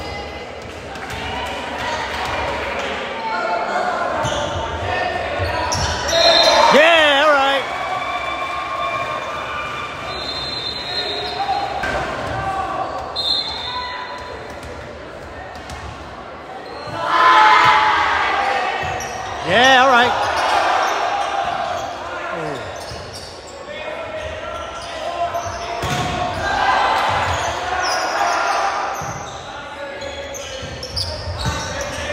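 Echoing gym ambience during a volleyball match: a volleyball bouncing on the hardwood floor and players and spectators talking, with loud bursts of shouting and cheering about six seconds in and again around seventeen to twenty seconds.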